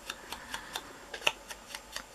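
A handful of faint, scattered ticks and taps as a sponge ink dauber is dabbed and rubbed onto the edges and corners of a small cardstock snowflake.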